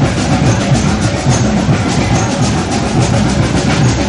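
Drumming: many drums struck in a fast, dense rhythm.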